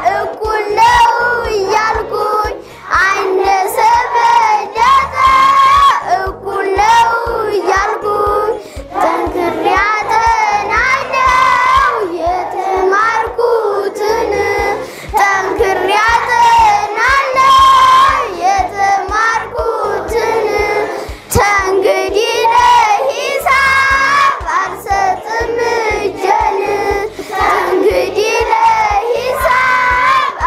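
A class of young children singing a song together in unison.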